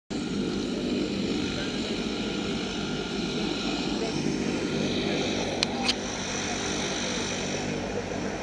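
Propeller aircraft engines running steadily: a continuous drone with several level tones in it. Two short clicks come a little past the middle.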